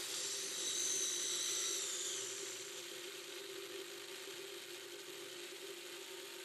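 Servo motors in the 3D-printed InMoov humanoid robot's hand whining as its fingers close on a ball, after a spoken 'take the ball' command. The whine is a thin high tone, loudest for the first two seconds and drifting slightly down, then fading to a fainter steady hum.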